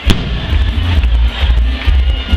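Loud music with a heavy bass, and one sharp bang of an aerial firework shell bursting just after the start.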